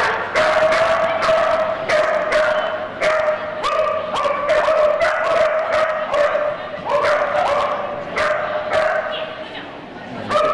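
Border collie barking over and over, about two high, sharp barks a second, while balking at an unfamiliar broad jump.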